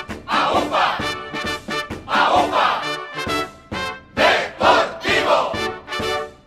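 A group of voices shouting a rhythmic chant in a football club anthem, in loud bursts about once a second, over the band's music.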